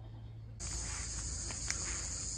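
Steady high-pitched buzzing of cicadas, which comes in abruptly just over half a second in, with a couple of faint clicks near the end.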